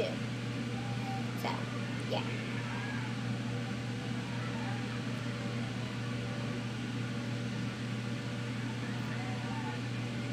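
A steady low hum from something running in the room, like a fan or appliance, unchanging throughout, with a few quiet words near the start.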